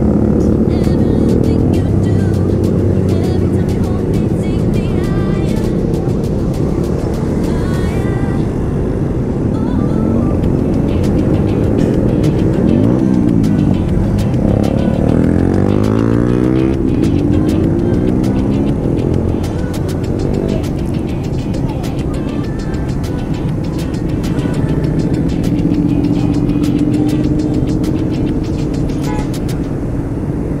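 A stream of motorcycles, mostly small commuter bikes, running past one after another in a convoy. Their engine pitch rises and falls as bikes go by, most plainly around the middle.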